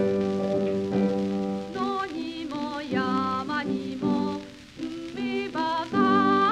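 A Japanese children's song: a woman sings with vibrato over piano accompaniment. Sustained piano chords carry the opening, and the voice comes in about two seconds in.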